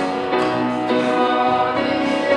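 Church worship band playing a song live: voices singing over piano and acoustic guitar.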